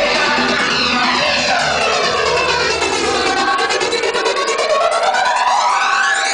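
Loud live psychedelic electronic music over a PA system, with a sweeping, jet-like phasing effect that glides down and then back up. The bass drops out about halfway through.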